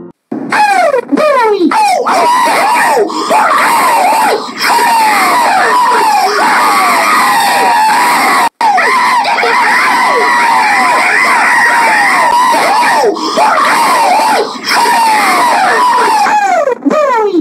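Many overlapping screams, each cry falling in pitch, loud and continuous with a few brief breaks.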